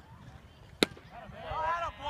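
A pitched baseball smacking into the catcher's mitt: one sharp pop a little under a second in. Players shout in raised, high voices during the second half.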